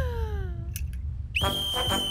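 Cartoon sound effects: a whistle-like tone sliding downward and fading out under a second in, then a steady high whistle starting about a second and a half in, over a low rumble.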